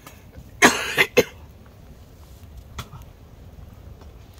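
A person coughs three times in quick succession about half a second in, the last cough short and sharp.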